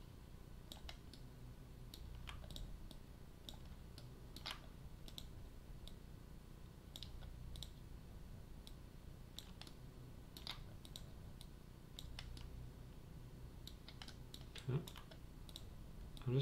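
Computer mouse clicking: scattered, irregular single clicks over a faint steady low hum.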